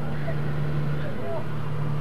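Light aircraft engine droning steadily, heard from inside the cabin in flight.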